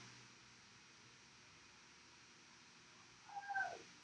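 Near silence for about three seconds, then near the end a single short, high-pitched meow from a cat that falls in pitch at its end.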